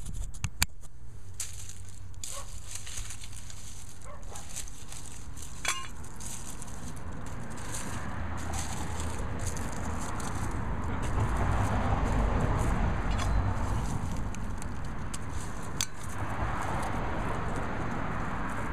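A hand rummaging through dry soil and dead leaves around the roots of dried sunchoke stalks, crackling and rustling. It starts with a few sharp clicks and grows louder about halfway through.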